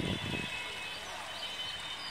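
Quiet outdoor background ambience: a steady low hiss of the surroundings with faint distant voices.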